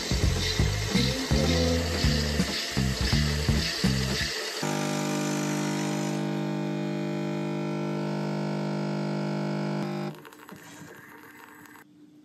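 Background music for the first few seconds. Then a Nespresso capsule machine's pump buzzes in one steady hum for about five seconds as espresso is dispensed, and it cuts off near the end.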